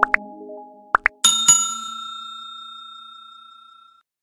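End-screen sound effects: a short held chord, quick pops in pairs at the start and about a second in, then a bell ding struck twice that rings on and slowly fades away.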